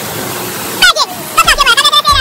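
Steady rushing splash of a pool waterfall cascading into shallow water; about a second in, a voice cuts in over it.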